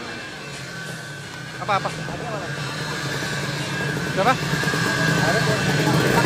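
Motorcycle engine running steadily in the background, slowly getting louder, with short calls from voices about two and four seconds in.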